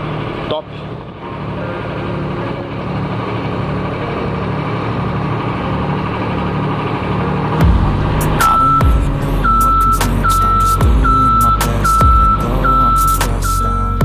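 Diesel engine of a JLG rough-terrain scissor lift running steadily as it drives down a truck's ramp. About halfway through, music with a heavy bass comes in over it, together with a steady high beeping about twice a second.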